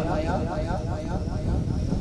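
A man's voice over a public-address microphone drawing out a long, wavering lamenting note in a majlis recitation, over a steady low rumble.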